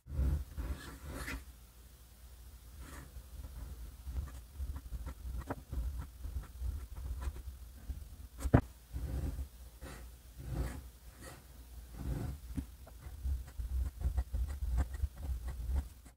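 Fountain pen flex nib scratching softly across paper in short, irregular strokes while writing, with one sharper tick about halfway through, over a faint low hum.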